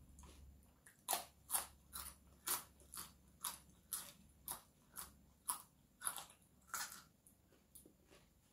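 Crisp crunching as a raw yardlong bean is bitten and chewed, about two crunches a second, starting about a second in and stopping shortly before the end.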